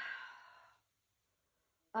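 A woman sighing: a breathy exhale that fades away within the first second.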